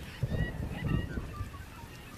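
Birds calling in short whistled notes over a low rumble that is loudest in the first second.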